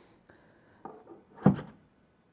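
EV charging plug with a Tesla adapter being pushed into a Tesla Model Y charge port: light handling noise, then a single short thunk about one and a half seconds in as the plug goes into the port.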